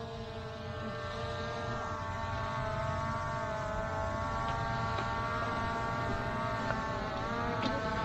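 Skydio 2 quadcopter flying overhead, its propellers making a steady multi-pitched whine that wavers slightly in pitch.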